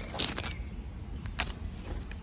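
Handling noise: rustling with a few sharp clicks, the sharpest about one and a half seconds in, over a low rumble.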